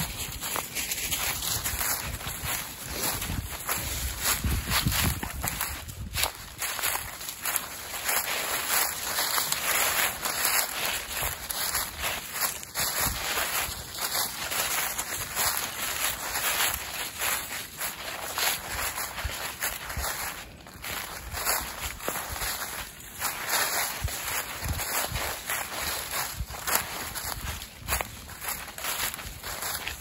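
Footsteps walking through thick dry fallen leaves: a continuous crunching and rustling of leaf litter underfoot, in a steady walking rhythm.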